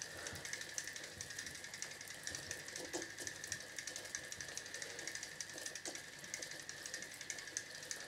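Jaxon Saltuna saltwater spinning reel being cranked steadily, winding a heavily twisted test line onto its spool. Its gears give a faint, fast and even ticking.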